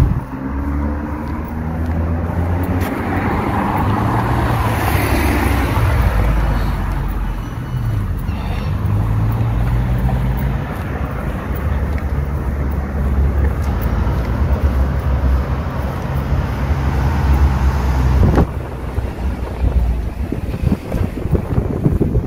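Wind rumbling and buffeting on the camera microphone, with street traffic noise behind it and a swell that rises and fades about four to six seconds in. The rumble drops off sharply about eighteen seconds in.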